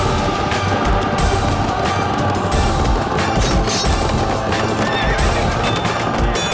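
Cavalry charge: many horses galloping, hooves pounding, with horses whinnying, under loud battle music.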